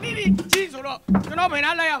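Male comedians talking back and forth in Burmese, with one sharp crack of a split-bamboo clapper about a quarter of the way in.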